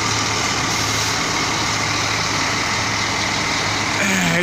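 Large diesel coach engine idling: a steady low hum under an even hiss, unchanging throughout.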